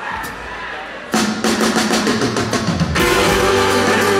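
Rock band starting a song live: after a quiet second, the drum kit comes in loud with a rapid roll of hits, and near the end the full band with electric guitars and bass joins in.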